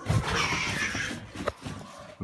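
Footsteps going down a staircase, with rustling handling noise from the phone, and a single sharp knock about one and a half seconds in.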